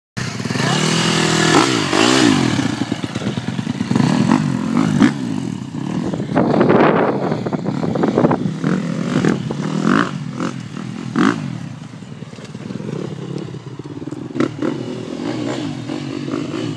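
2013 KTM 250 SX-F motocross bike's four-stroke single-cylinder engine revving up and down as it is ridden, the pitch rising and falling repeatedly; it gets quieter after about twelve seconds.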